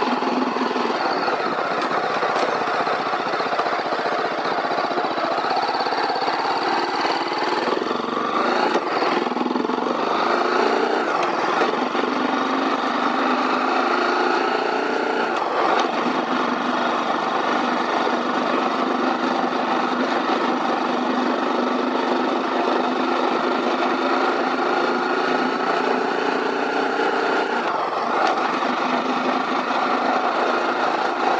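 BMW G310R's 313 cc single-cylinder engine and exhaust running under way at low to moderate road speed. The engine note rises and falls several times with throttle changes.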